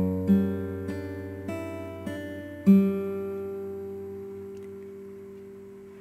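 Electric guitar with a clean tone, fingerpicking a G6/F# chord. Single notes are picked about every half second, then a fuller stroke nearly three seconds in rings out and slowly fades.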